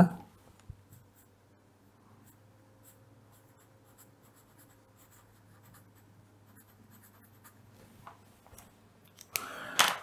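Felt-tip pen writing on paper: faint, short scratching strokes as a word is lettered.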